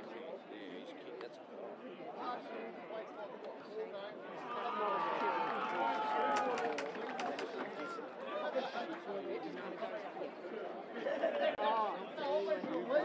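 Overlapping voices of spectators and players talking and calling out at a football ground, getting louder about four seconds in and again near the end, with a few short sharp clicks in the middle.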